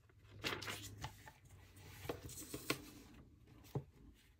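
Faint paper handling: soft rustles and a few light crinkles and clicks as a small sticker tab is pressed onto the edge of a planner page and the pages are lifted and turned.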